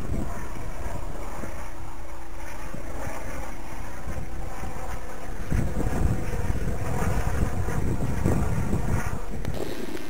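Wind buffeting the microphone, over the distant steady whine of a ducted-fan model jet flying overhead. A faint steady hum stops about halfway through, and the wind rumble grows louder after it.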